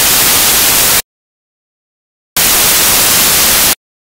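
Loud static hiss that cuts off abruptly about a second in, then after dead silence cuts back in about two and a half seconds in for roughly a second and a half: an audio signal fault or dropout, not a sound from the stage.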